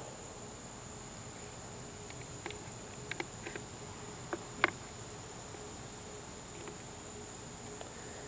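A steady high-pitched insect drone in the background, with a few light clicks as metal test probes touch the battery connector pins.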